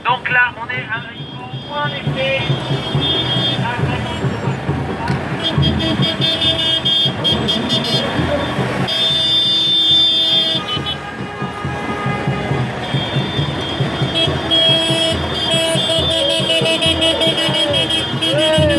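Minibuses of a slow-moving convoy driving past, with vehicle horns tooting in held blasts on and off throughout, over voices and music.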